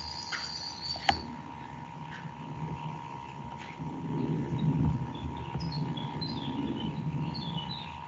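Low background noise from an open online-call microphone: a steady electrical hum with one sharp click about a second in, a faint low murmur in the middle and scattered faint high chirps.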